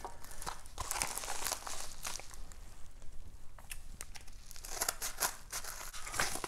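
Crinkling and rustling of card packaging, plastic sleeves and a padded mailer, as trading cards are handled and unpacked, with scattered small clicks. It is busiest in the first two seconds and again near the end, thinner in the middle.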